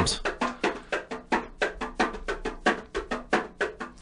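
Brazilian tamborim, a small handheld frame drum, struck with a stick in a quick rhythm of sharp hits, about six a second.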